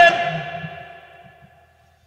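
A man's voice through a PA system holding the last chanted note of a phrase, fading away with echo over about a second and a half, then near silence.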